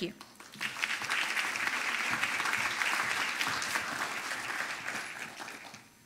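Audience applause, starting about half a second in, holding for a few seconds and dying away near the end.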